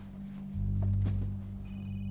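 A cell phone starts ringing about one and a half seconds in, a high electronic ring tone made of several steady pitches, over a low steady hum.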